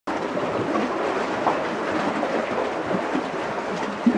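Steady rushing wash of lake waves lapping against the shore.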